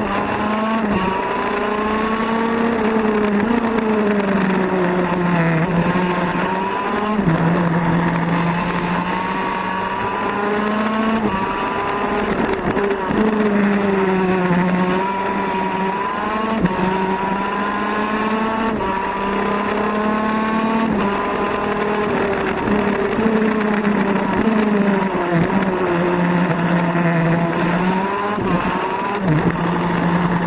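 Racing kart's two-stroke engine heard onboard at full race pace: a high, buzzing note that climbs steadily along the straights and drops sharply each time the kart slows for a corner, about ten times, then climbs again.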